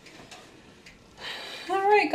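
Quiet kitchen room tone with a few faint ticks; about a second in, a rustle of someone moving up close, and a voice starts just before the end.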